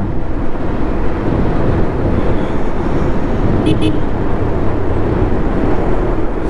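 Bajaj Pulsar 150 single-cylinder motorcycle engine running steadily under way, mixed with road and wind rush. Two brief sharp high sounds come about four seconds in.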